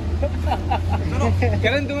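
Men talking over the steady low rumble of a Honda scooter's small engine idling.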